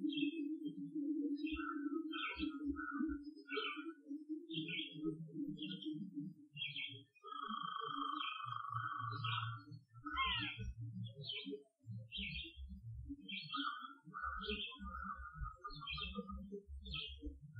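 Birds chirping in short, high calls repeated two or three times a second, with a longer held note about eight seconds in, over an uneven low rumble.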